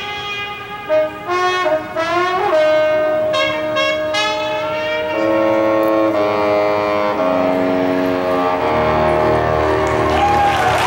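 Marching band brass playing a run of short accented notes that lead into a long held chord. Lower notes and a deep rumble swell in near the end.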